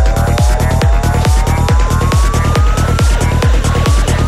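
Psychedelic trance track with a steady four-on-the-floor kick drum, about two and a half beats a second, and a pair of synth tones rising slowly in pitch over it.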